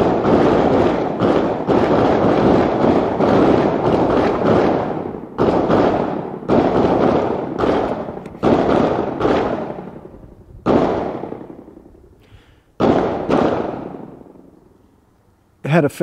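Handgun fire from other shooters at a concealed-carry qualification: rapid shots overlapping for about the first five seconds, then single shots one to two seconds apart, each trailing off in an echo.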